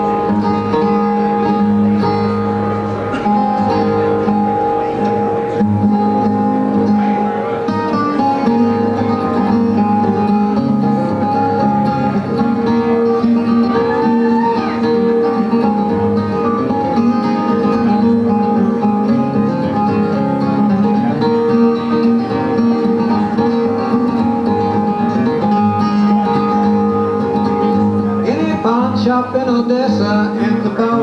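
Two acoustic guitars played together in an instrumental passage, picked single-note lines over chords with sustained ringing notes.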